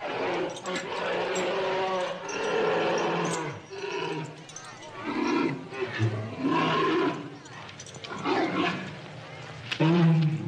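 A bear roaring and growling in repeated outbursts over the voices of a crowd.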